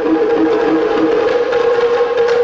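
Chinese percussion ensemble music: quick sticked strokes on a set of tuned drums of graded sizes (paigu), under one long held note.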